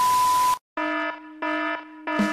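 Television static hiss with a steady high test-pattern beep, cutting off about half a second in; after a brief silence, an alarm buzzer sounds twice.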